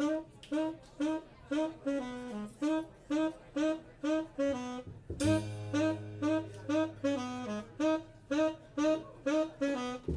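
Saxophone playing a short staccato riff over and over in a jazz trio, about two notes a second. About five seconds in, drums and a low sustained tone join under it.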